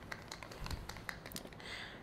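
Faint, irregular light taps and clicks of a stir stick in a cup of titanium white acrylic paint being mixed.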